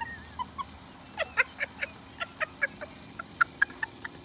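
Two women laughing hard in a run of short, breathless, high-pitched bursts, about five a second, with a brief high squeal about three seconds in.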